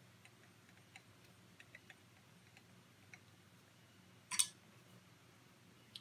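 Faint, scattered small clicks of a hex driver turning a tiny M2 screw into an RC beadlock wheel, then one brief scrape about four seconds in.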